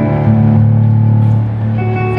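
Digital piano played live: sustained chords over held low bass notes, the harmony shifting about one and a half seconds in.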